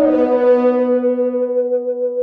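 Sampled orchestral playback: a theremin melody doubled by French horns steps down at the start to one long held note that slowly fades.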